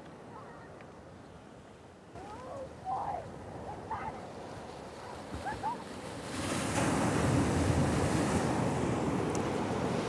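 Ocean surf breaking on the rocks below, a steady wash that swells noticeably louder about six seconds in as a wave comes in.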